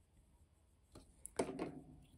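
Near-quiet room tone, then a brief voice sound about one and a half seconds in, with a few faint clicks of handling just before it.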